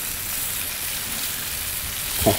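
Marinated kalbi short ribs sizzling steadily on a hot Blackstone flat-top griddle, the sugary marinade caramelizing on the steel.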